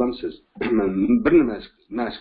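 A man's voice: short stretches of speech with a clearing of the throat among them.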